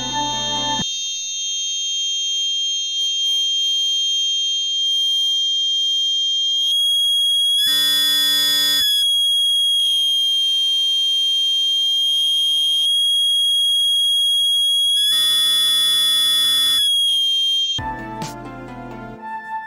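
Battery-powered electronic buzzer sounding a steady high-pitched tone, its volume set by a 5k potentiometer in series as the knob is turned. The tone gets louder over the first several seconds and twice turns briefly harsher.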